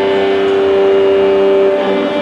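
Live blues band holding a sustained chord: several steady, unbroken notes with no beat or strumming, changing little over the two seconds.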